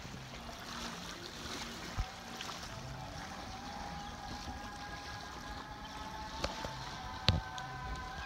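Waterfront ambience: gentle water lapping under a steady outdoor hush, with a steady high-pitched hum coming in about two and a half seconds in and a few sharp knocks, the loudest near the end.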